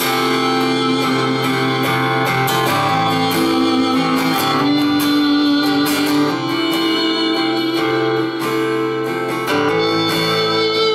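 Acoustic guitar strummed steadily while a harmonica plays long held notes over it, an instrumental passage without singing.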